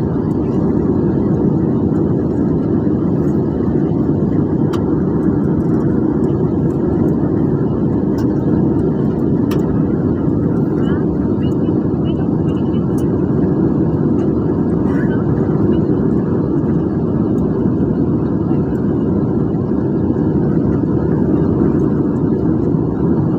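Steady low roar inside a jet airliner's cabin in flight, heard from a window seat over the wing: engine and airflow noise.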